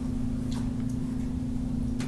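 A steady low hum with background room noise, with two faint clicks about half a second and a second in.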